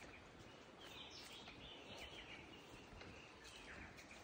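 Near silence: faint outdoor ambience with a few soft, distant bird calls.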